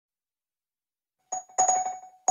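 Silence, then a bell-like chime struck twice, about a third of a second apart, each strike ringing on at the same pitch.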